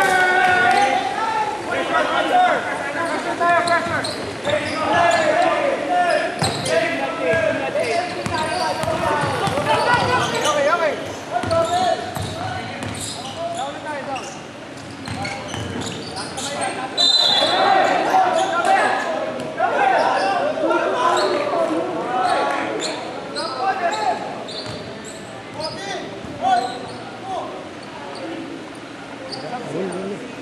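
Basketball game in a large gym: the ball bouncing on the hardwood court, with sneaker-and-floor knocks and players' voices calling out across the hall.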